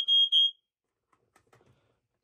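Interconnected smoke alarms sounding together, set off by pressing the test button on one: a high, steady horn tone with a short break, cutting off about half a second in.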